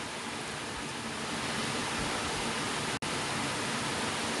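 Steady hiss of background noise with no speech, cutting out for an instant about three seconds in.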